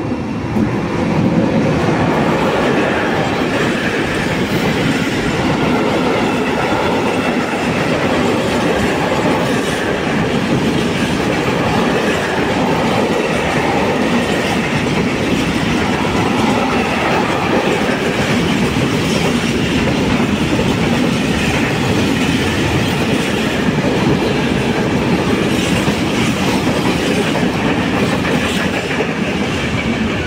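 Container freight train hauled by a Medway E483 (Bombardier TRAXX) electric locomotive running through at speed. The locomotive passes at the start, then a long string of loaded container wagons clatters over the rail joints, loud and steady, dying away as the last wagon clears at the very end.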